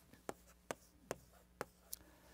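Chalk tapping and scraping on a chalkboard as a short note is written: five short, sharp strokes, about two a second.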